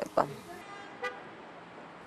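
A woman's voice ends a word, then a quiet lull in which a single faint, short car-horn toot sounds about a second in, from street traffic.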